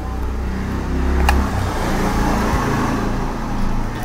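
Car engine and road noise from a video playing on the phone in the mini TV, a steady low rumble with a single sharp click a little over a second in.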